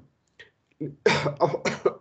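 A man coughing several times in quick succession in the second half.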